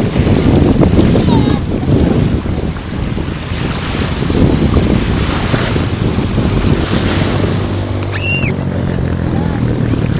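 Small waves washing and breaking over a pebbly shoreline, with wind buffeting the microphone in a steady low rumble.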